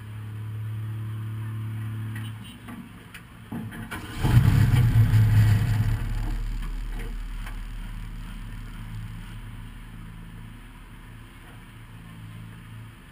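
1300 cc stock car engine idling, heard from inside the stripped cabin, then revved hard about four seconds in and settling back to a lower, steady idle.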